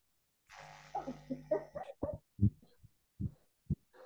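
A video-call participant's microphone coming on after dead silence: faint background noise with a steady low hum, a few muffled, indistinct voice fragments, then several short, low, muffled knocks or syllables.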